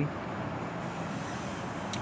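Steady background hum of distant city traffic, with a faint click just before the end.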